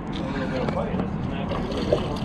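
Spinning reel being cranked, winding a hooked mangrove snapper up to the surface, over a steady noisy background. A brief splash near the end as the fish breaks the water.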